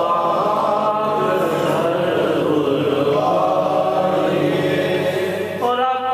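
A man chanting a naat, an Urdu devotional poem praising the Prophet, in long held melodic lines. There is a short break just before the end as the next line begins.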